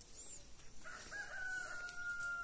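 A rooster crowing faintly: one long, held call that starts about a second in.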